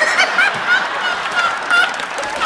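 A man laughing hard in a run of short, high-pitched squeals, about four a second.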